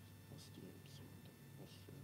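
Near silence: a priest whispering the Latin prayers of the Canon under his breath, heard as a few faint hissing syllables over a low steady room hum.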